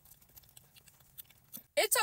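Quiet eating sounds: faint, scattered soft clicks of a mouth chewing a bite of potato salad, with a single word of speech starting near the end.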